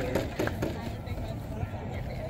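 Faint, scattered voices of children and adults talking, over a steady low rumble.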